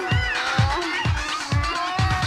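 Electronic dance music from a cassette DJ mix: a steady kick drum about two beats a second under a high melodic line that glides up and down, most prominently just after the start.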